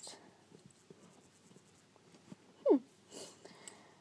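A quiet room with faint rustling and small handling clicks, and one short falling "hmm" from a girl about two and a half seconds in.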